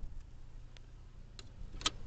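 A quiet stretch with a faint low hum and three soft, sharp clicks spread across it.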